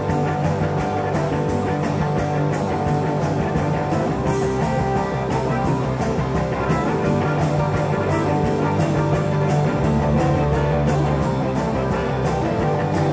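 Live blues-rock band playing an instrumental break: electric guitars over a steady drum beat, with a harmonica playing lead.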